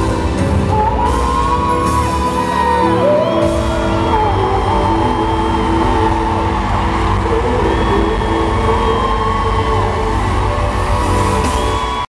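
Boy band singing live into microphones over amplified accompaniment, with long held and sliding vocal notes, heard through the reverberant sound of a large arena.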